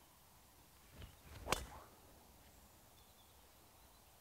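Golf driver swung at a teed ball: a faint swish, then one sharp click of the clubface striking the ball about one and a half seconds in.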